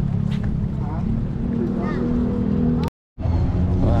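A steady low motor drone with faint voices in the background; the sound drops out completely for a split second about three seconds in.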